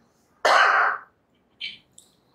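A man clears his throat once, a harsh burst about half a second long, followed by a shorter, softer sound near the end.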